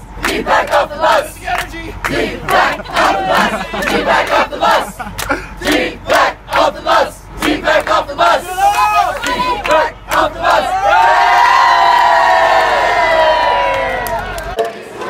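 A crowd chanting "Off the bus!" in a steady rhythm, then breaking into one long, loud scream about ten seconds in, its pitch sliding slowly down.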